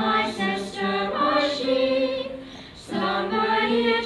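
A group of young voices singing a slow song together in unison, with an acoustic guitar accompanying. The singing breaks briefly about two and a half seconds in, then resumes.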